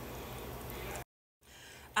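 A pot of red pozole simmering on the stove: a steady hiss of boiling, broken off abruptly about a second in by an edit, then fainter.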